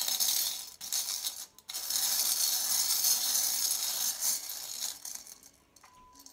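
A pile of small metal charms rattling and jingling as a hand stirs through them in a bowl, a continuous shaking that dies away about five seconds in.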